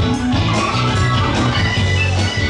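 Live rock band playing: electric guitar, keyboards and drum kit, with held low bass notes underneath and steady drum hits.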